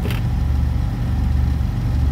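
Semi-truck's diesel engine idling, a steady low rumble heard inside the cab.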